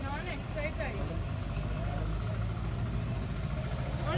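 A vehicle engine idling, a steady low hum, with people talking over it.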